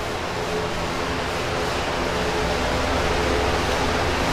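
Steady rushing background noise with a faint low hum and a fluctuating rumble underneath.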